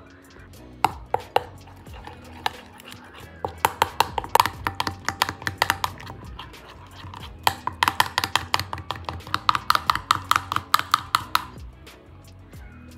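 Metal spoon clinking against a glass bowl while stirring a wet green chutney marinade: a few separate taps about a second in, then two long runs of quick ringing clinks, about six a second.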